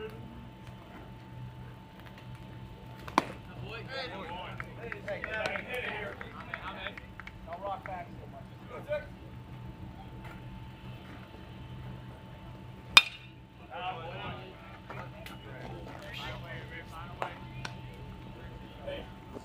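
Sounds of a baseball game: players and spectators calling out in the background, with two sharp cracks of the baseball, a small one about three seconds in and a loud one about thirteen seconds in.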